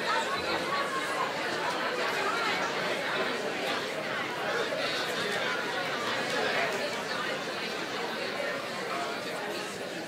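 Many people talking at once in a congregation, a steady murmur of overlapping conversation in a large hall.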